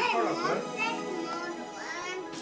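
A toddler's high-pitched excited vocalizing without words: a squeal that falls steeply in pitch at the start, and another rising squeal near the end.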